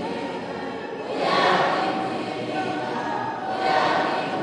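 A congregation singing a hymn together in a large hall, the many voices swelling on each phrase.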